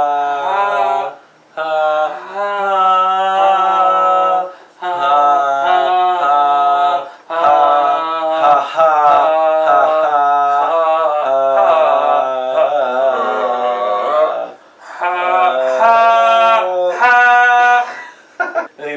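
Male voices singing wordless, drawn-out vowel sounds with no accompaniment, improvising a melody. The singing comes in long, wavering phrases with brief breaks between them.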